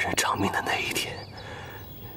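A person's voice speaking a short line of dialogue during about the first second, then a pause with only faint background.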